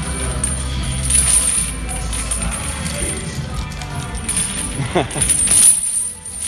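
Steel weight chains slung around the waist clinking and jangling as they shift with each push-up, over background music.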